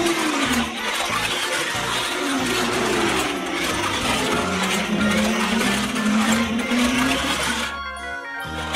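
Plastic toy car running along a plastic race track: a continuous rattling whir that stops abruptly near the end.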